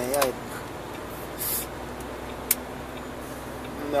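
Inside a moving truck's cab: the engine and road noise run as a steady low hum. A short hiss comes about a second and a half in, and a single sharp click at about two and a half seconds.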